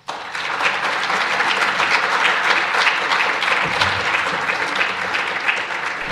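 Audience applauding: dense, many-handed clapping that starts suddenly and eases slightly near the end.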